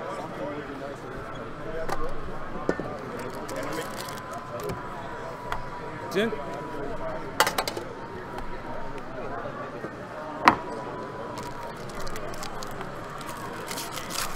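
Packaging being handled: a metal trading-card tin and its foil wrapper are unwrapped and turned over, giving a few sharp clicks and crinkles, against a steady background of hall murmur.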